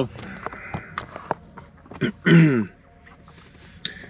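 A man clearing his throat once, a short sound falling in pitch a little over two seconds in, with a few soft clicks before it.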